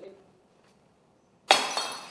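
A small ceramic flower vase dropped onto a tiled floor and smashing about one and a half seconds in, with a second crack right after and a ringing clatter of shards that dies away within about half a second.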